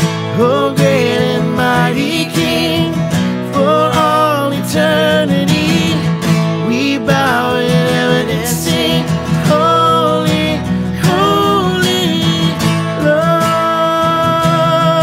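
A man singing a worship song to two strummed acoustic guitars, his voice wavering in vibrato on sustained notes; near the end he holds one long note.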